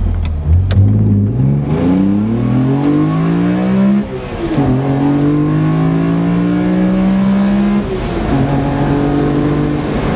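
BMW E46 M3's S54 straight-six with a CSL intake airbox, heard from inside the cabin under hard acceleration. The revs climb, drop at an upshift about four seconds in, climb again, drop at a second upshift about eight seconds in, then pull again.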